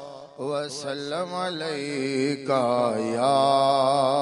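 A man singing a naat, Urdu devotional verse in praise of the Prophet, into a microphone in long, wavering, drawn-out notes. There is a brief breath pause at the start before the voice comes back in.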